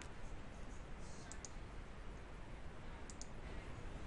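Faint computer mouse clicks over a low room hiss: a quick pair about a second in and another pair near three seconds.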